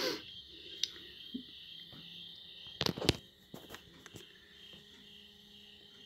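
Faint steady high-pitched drone, with a few sharp clicks about three seconds in.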